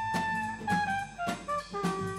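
Live band playing an instrumental passage in a ska-pop style. A saxophone holds a long note, then plays a line of short notes over a steady beat of drums and guitar.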